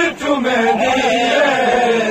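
Male chanting of a noha, a Shia mourning lament, sung in long drawn-out, wavering notes.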